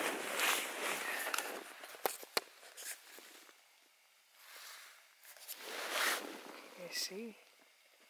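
Nylon fabric rustling as a jacket and sleeping gear shift inside a small tent, loudest in the first second or so and again about six seconds in, with a few light clicks around two seconds in. A short wavering voice sound comes near the end.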